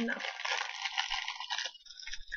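Plastic Sour Punch candy bag crinkling continuously as it is handled, stopping shortly before the end.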